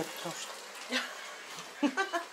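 Faint steady sizzle of chopped chicken cutlets frying in a lidded pan, with two short clicks, one about a second in and one near the end.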